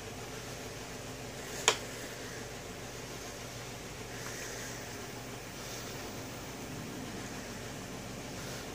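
Cooling fans of a Dell OptiPlex 745 desktop and the spare ATX power supply wired to it running with a steady hum as the computer powers up and boots. A single sharp click about two seconds in.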